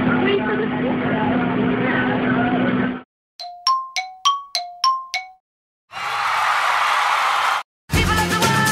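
Muffled background voices over a steady hum, cutting off suddenly about three seconds in. Then an edited-in sound effect of seven quick metallic dings alternating between two pitches, followed by a rushing whoosh about a second and a half long.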